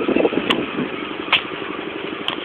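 Go-kart engines running steadily, with two sharp clicks about half a second and about a second and a half in.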